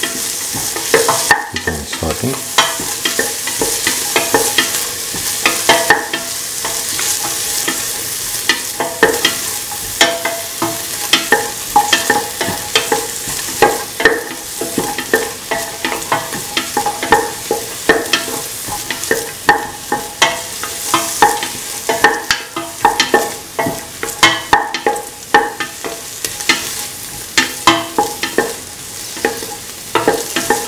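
Chopped onion sizzling in hot oil in a stainless steel pan, with frequent irregular clicks and scrapes of a utensil stirring against the pan.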